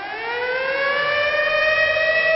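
Air-raid siren winding up: one wailing tone that rises in pitch and grows louder, then levels off, sounding muffled.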